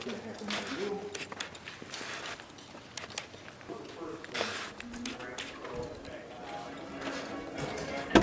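Footsteps of hard-soled shoes clicking irregularly on steps and floor, with faint voices talking.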